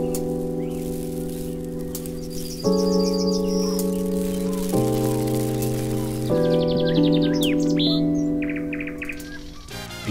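Soft held music chords that shift three times, with bird chirps layered over them in two short bursts, fading down near the end: a TV station's bumper jingle marking the end of an ad break.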